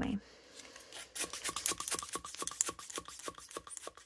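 Wet ink being spattered onto a paper page: a rapid run of small scratchy ticks, about ten a second, starting about a second in and lasting nearly three seconds.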